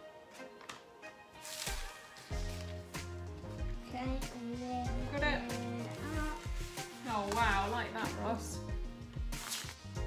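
Background music with a bass line and a singing voice coming in about four seconds in.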